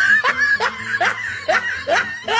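Laughter sound effect: one person laughing in a steady run of short 'ha' bursts, about three a second.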